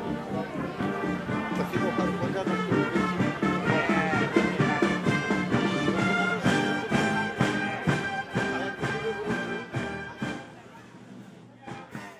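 Brass band playing live, the ensemble sounding repeated short chords in the second half before the music drops away near the end.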